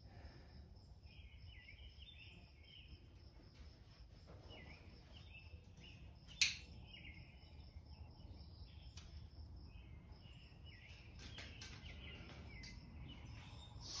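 Faint background of birds chirping and a steady, pulsing insect trill, with soft clicks and rustles from white twine being tied around bundles of wires. One sharp click about six and a half seconds in.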